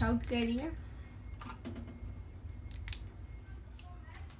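A few faint clicks and scrapes of a steel ladle against the pot and dish as thick cooked lentil dal is ladled into a serving dish, over a low steady room hum.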